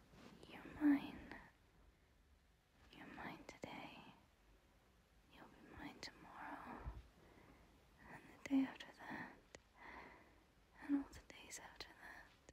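A woman whispering softly close to the microphone in about five short phrases, with pauses between them.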